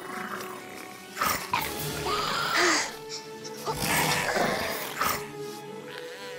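Background music with three loud growling roars, in a roaring play fight between a girl and a baby Albertosaurus. The first roar is short; the second and third each last over a second.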